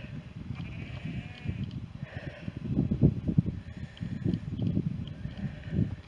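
Low, gusty rumble of wind buffeting the microphone in uneven swells, with a few faint animal calls in the distance.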